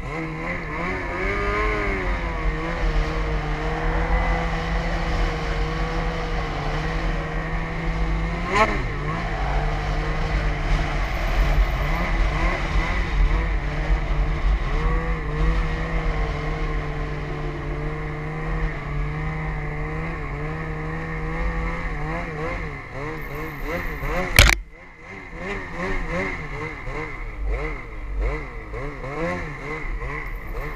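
Snowmobile engine running at a steady pitch under throttle, with low wind rumble on the microphone. There is a sharp crack about eight seconds in and a loud bang near the end, after which the engine drops quieter to an uneven, wavering pitch.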